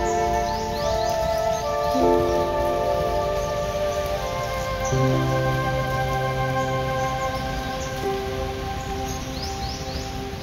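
Calm background music of long held chords that change about every three seconds, over a steady hiss like rain, with a few short chirps.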